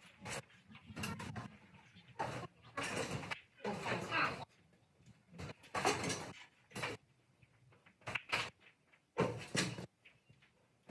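Indistinct talking among several people in a barn, in short bursts, with occasional knocks between them.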